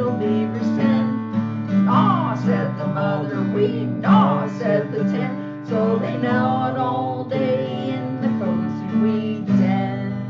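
Acoustic guitar strummed in a steady accompaniment, with voices singing a children's song over it.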